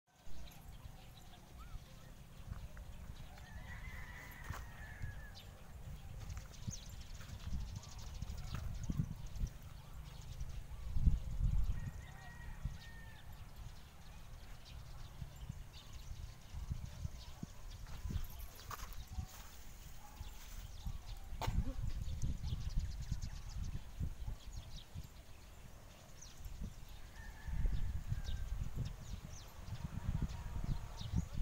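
Outdoor wind rumbling and buffeting on the microphone, with a few faint, short, high-pitched animal calls about 4, 12 and 28 seconds in.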